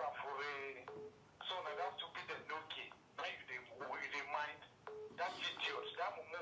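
Faint speech over a phone line: a caller's voice coming through a phone speaker, thin and cut off in the highs.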